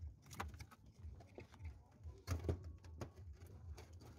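Scattered light knocks and clinks of shells and metal bowls being handled at a barbecue, over a low rumble; the loudest knocks come about two and a half seconds in.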